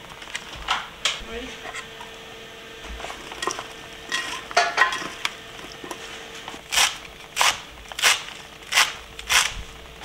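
Kitchen knife knocking on a plastic cutting board while chopping vegetables and herbs: scattered light taps, then a steady run of five chops about two-thirds of a second apart near the end.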